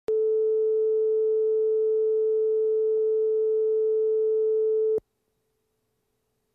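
Line-up reference tone accompanying colour bars at the head of a videotape: a single steady pure pitch that cuts off suddenly about five seconds in.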